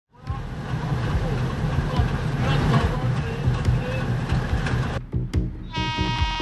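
A freight train hauled by diesel locomotives running past, with a heavy engine rumble and rail noise mixed with background voices. About five seconds in it cuts off abruptly to electronic music: a beat with a sustained synth chord.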